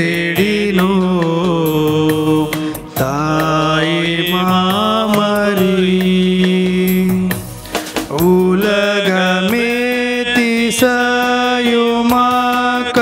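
A solo voice singing a slow Tamil devotional hymn in long held notes with sliding ornaments. It pauses briefly for breath about three seconds in and again near eight seconds.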